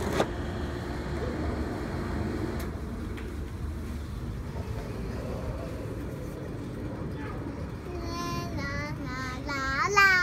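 A toddler's high voice sings a few wavering sing-song notes near the end. Under it runs a steady low rumble, and there is a single sharp click just after the start.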